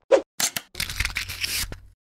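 Animated logo-intro sound effects: a short sharp hit near the start and a brief hiss, then about a second of scratchy, crackling noise over a low rumble that cuts off just before the end.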